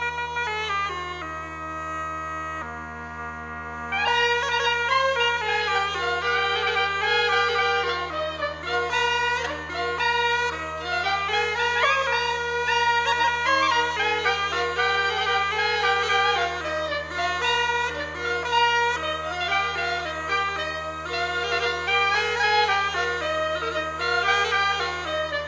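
Polish folk music on a kozioł bagpipe: a steady low drone under a reedy melody. About four seconds in, the music grows louder and fuller as more playing joins in.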